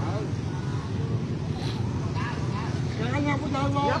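A steady low rumble of road traffic, with people's voices talking from about three seconds in.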